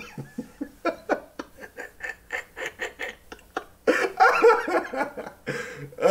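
A man laughing: a run of short breathy snickers, then a louder burst of laughter about four seconds in.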